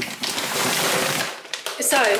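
Packaging being handled, a dense rustling and scraping that lasts about a second and a half and then stops.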